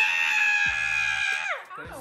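A woman's long, high-pitched scream, held at one pitch and then sliding down and fading out about one and a half seconds in, as she takes the penalty slap of whipped cream in the face. Background music with a steady beat plays underneath.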